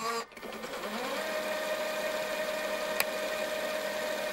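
A buzzing electronic tone that slides up in pitch over the first second, then holds steady, with one sharp click about three seconds in: a sound effect under a chapter title card.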